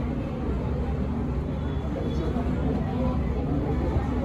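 Steady low rumble of background noise with faint, indistinct voices.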